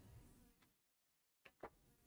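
Near silence, with two faint short clicks close together about one and a half seconds in.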